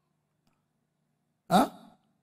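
Near silence, then about one and a half seconds in a man's single short questioning 'huh?' with a rising pitch.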